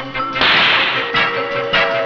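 Cartoon whoosh sound effect: a loud hiss lasting about half a second, then a shorter one near the end, over background music.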